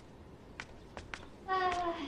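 A few light footsteps on a hard floor, then about one and a half seconds in a short wordless vocal sound from a person, sliding slightly down in pitch.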